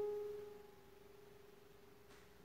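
Digital piano holding a single mid-range note that dies away slowly.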